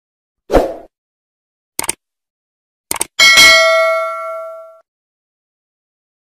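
Sound effects of a subscribe-button animation: a soft thump, two sharp clicks about a second apart, then a bell ding that rings out for about a second and a half.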